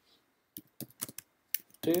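Computer keyboard typing: about half a dozen separate keystrokes at an uneven pace.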